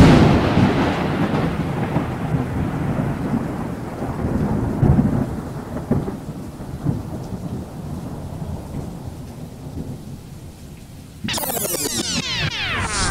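A thunder-and-rain sound effect: a loud clap at the start that rolls on and fades away over about ten seconds under a hiss of rain. Near the end a transition effect of fast falling swoops cuts in.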